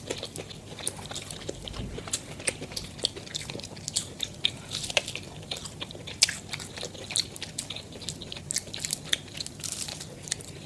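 Close-up biting and chewing of crunchy breaded KFC fried chicken: a quick, dense run of sharp crackles as the crust breaks. The eating is played at double speed.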